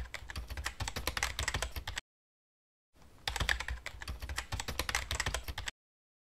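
Keyboard typing sound effect: rapid keystroke clicks in two runs, with about a second of silence between them, each run stopping abruptly.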